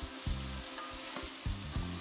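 Diced onion, jalapeño and celery sizzling steadily as they sauté in an enamelled Dutch oven, with a wooden spoon stirring through them and tapping the pot a few times.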